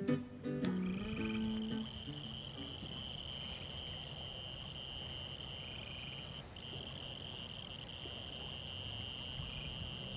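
Frogs and crickets calling in a steady, continuous evening chorus beside a river, with a low rush of flowing water underneath. Guitar music fades out in the first two seconds.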